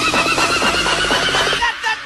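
Electronic background music with quick, regular beats and a high wavering tone drifting slightly down, cutting off about a second and a half in.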